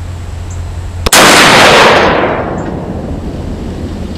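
A single shot from a muzzle-braked Armalite AR-50 firing .50 BMG armor-piercing ammunition about a second in: one very loud report that dies away over about a second.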